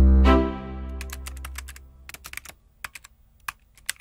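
Logo sound effect: a deep bass boom with a short upward tone jump, fading away over about two seconds, followed by a run of irregular keyboard-typing clicks.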